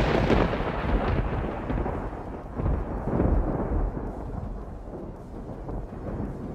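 A thunder-like rumbling sound effect, loud at first and then fading over several seconds with a couple of swells, growing duller as it dies away.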